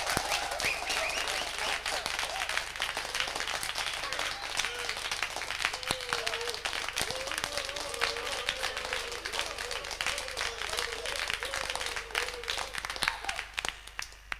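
Applause: many hands clapping, with voices calling out over it.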